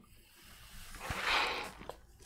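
A soft scrape of paper that swells and fades over about a second and a half, as a spiral-bound sketchbook is slid and turned on a tabletop.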